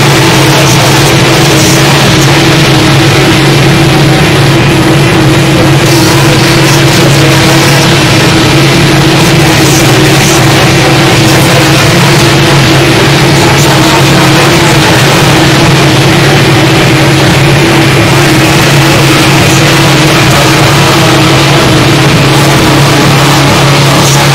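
Harsh noise / power electronics: a loud, unbroken wall of distorted noise over a steady low drone, with no change in level.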